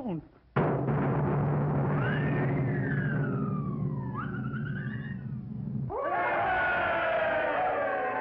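Cartoon soundtrack: a sudden crash about half a second in, then a low rumbling drum roll with sliding whistle-like pitches rising and falling over it. Orchestral music takes over about six seconds in.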